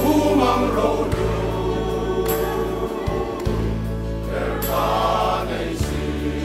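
A men's group singing a gospel song together with band accompaniment and a steady bass line, with bright crashes about two seconds in and again near five seconds.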